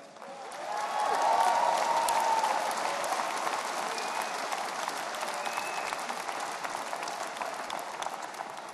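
Arena crowd applauding. The applause builds over the first second, is loudest at about a second and a half, and then slowly dies down.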